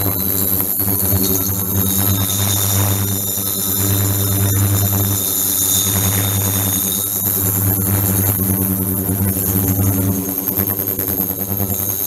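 Ultrasonic transducer box running under a glass bottle of water: a steady buzzing hum with high-pitched whining tones above it. The hum swells and fades every second or two as the water cavitates.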